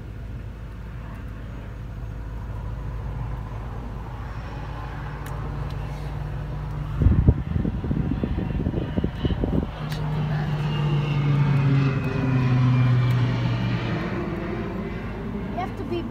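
Low-flying crop-dusting airplane passing overhead. Its engine grows louder as it comes in, then drops in pitch as it flies away. A burst of low rumbling knocks comes in the middle, between about seven and ten seconds.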